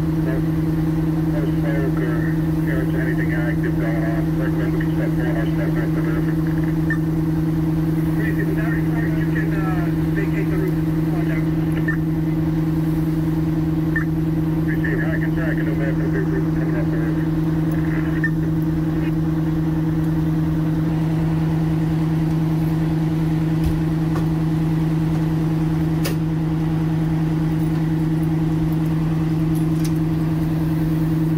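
Diesel engines of parked fire apparatus running steadily, a constant low hum and rumble, with voices of people around the scene and a sharp click near the end.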